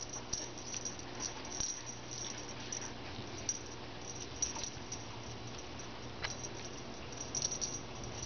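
Kittens playing on carpet: soft scuffs and scattered light ticks, with a sharper click about six seconds in and a quick run of small ticks near the end, over a steady low hum.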